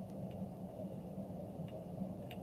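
Steady low hum and hiss of room tone during a pause in speech, with a few faint ticks.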